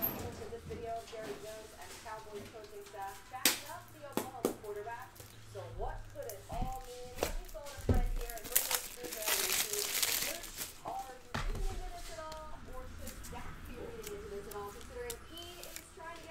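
Faint voices in the background, with sharp plastic clicks and a rustle as a trading card is worked into a clear 75-point card holder. The loudest part is a scraping rustle about nine seconds in.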